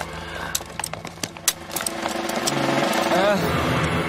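A scuffle with a quick run of sharp metallic clicks and knocks as handcuffs are snapped onto a man's wrists. In the second half a man's voice strains and cries out.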